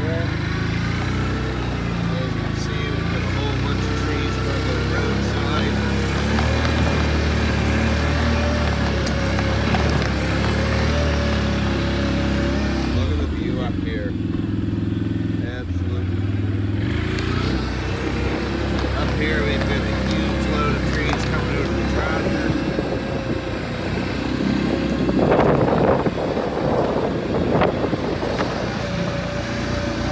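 A vehicle's engine running steadily under load, with a steady whine over it, while driving up a rough dirt track. A brief louder noisy burst comes about 25 seconds in.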